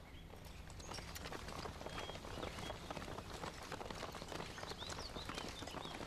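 Footsteps of a group of soldiers hurrying over grass and dirt: a dense, soft patter of many steps with light clicks and rattles, thickening about a second in.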